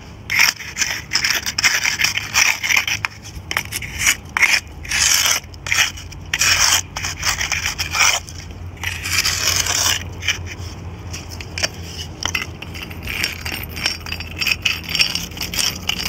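A nail set in a wooden board scraping mortar out of the joints between bricks, in a series of short, rough strokes with one longer stroke a little past halfway.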